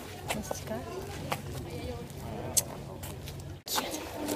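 Faint, indistinct voices of people talking in the background over a steady low hum, with a few sharp clicks.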